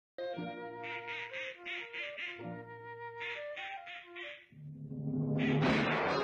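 Two quick runs of cartoon-style quacks over sustained orchestral chords. Near the end the music swells up and grows louder.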